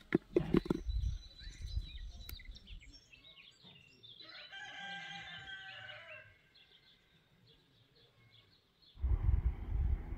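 A rooster crows once, about four seconds in, a single drawn-out crow of about two seconds, with small birds chirping before it. There are soft knocks and rustling at the start, and a loud low rumble comes in near the end.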